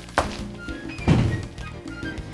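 Background music with sustained notes, broken by two thuds about a second apart, the second louder and deeper.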